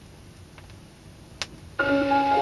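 Vinyl LP's lead-in groove playing under the stylus: low surface noise with a few faint clicks and one sharper crackle. Near the end the recording's music starts suddenly with several held notes.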